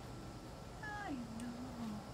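A white wolf gives a short whining call about a second in, which drops sharply in pitch and then holds low and wavering for most of a second.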